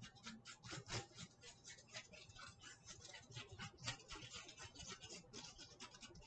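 Faint, quick, irregular scraping and ticking of a stick stirring epoxy resin in a small cup, several strokes a second.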